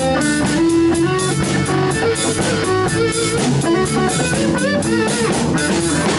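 Small live band playing: electric guitar over a drum kit, with steady drum and cymbal strokes.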